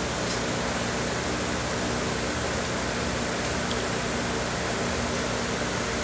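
Steady rushing air noise with a low, even hum underneath from grow-room fans and ventilation, unchanging throughout.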